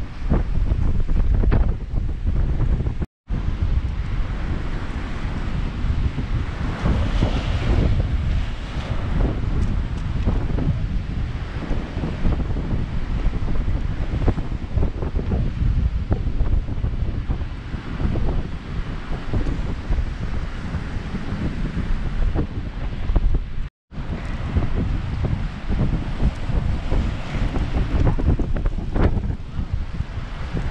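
Strong wind buffeting the microphone over rough storm surf, with waves breaking on the rocks and washing up the flooded shore in repeated surges of hiss. The sound cuts out completely for an instant twice.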